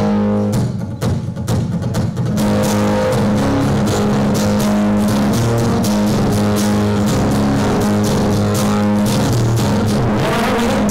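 Amplified acoustic-electric guitar strummed as the instrumental intro to a country song: a few separate strums at first, then an even, steady strumming rhythm from about two seconds in.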